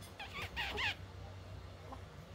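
Infant making a few short, high-pitched squealing coos that bend up and down in pitch, about half a second in.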